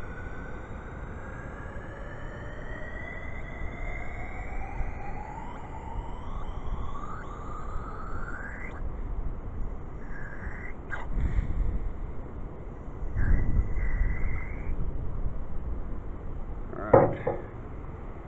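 Computer duster can held upside down, spraying liquid difluoroethane into a test tube: a hiss with a whistling tone that rises steadily in pitch for about nine seconds, then a few shorter tones. Wind gusts rumble on the microphone midway, and there are a couple of knocks near the end.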